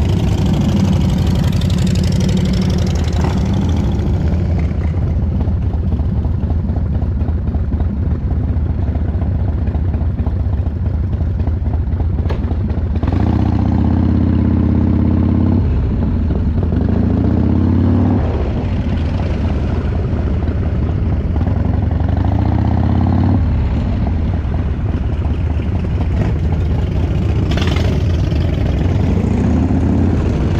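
A Harley-Davidson V-twin motorcycle engine, likely a 1997 Dyna Low Rider, runs steadily close to the microphone. From about halfway through it revs up and pulls away several times as the bike rides off through the gears.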